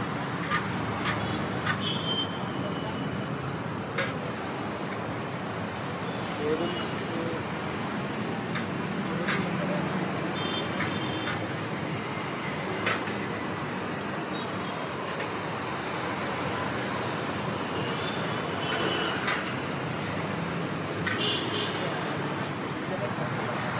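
Steady roadside traffic noise with background talk, broken now and then by sharp metallic clinks of steel ladles against steel pots and plates, some with a short ring.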